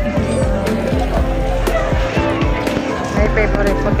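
Music with a steady beat and held notes, with people's voices mixed in.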